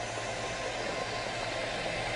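Steady, even noise like a hiss, with no distinct events in it.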